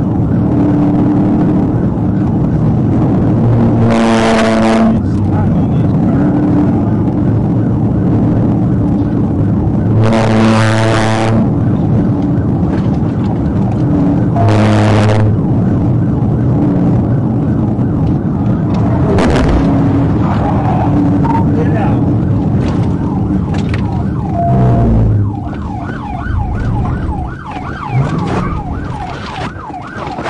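Police patrol car's siren over loud engine and road noise heard inside the cruiser at about 80 mph, with three loud blasts of about a second each at roughly 4, 10 and 15 seconds in. After about 25 seconds the car slows sharply, the road noise drops, and a fast rising-and-falling siren yelp stands out.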